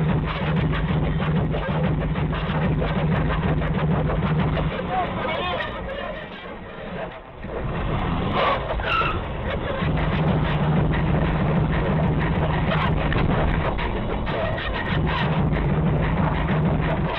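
Cabin noise of a car driving in traffic, heard from inside, with music and indistinct voices mixed over it. The sound drops briefly about six to seven seconds in, then resumes.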